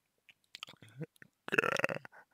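A man's soft hesitation sounds between words: a faint throaty sound about a second in, then a louder drawn-out vocal sound like 'uh' near the end.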